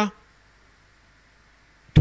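A pause in a man's speech into a microphone: a word trails off at the start, then near silence with a faint hum, and the next phrase begins sharply near the end.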